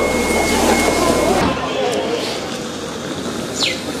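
Voices for about the first second and a half, then a change to a steady outdoor hiss with one short falling chirp near the end.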